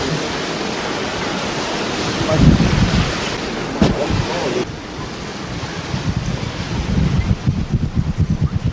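Steady rushing wind and surf noise on the microphone. It drops abruptly in level a little over halfway through, and rapid low buffeting builds near the end.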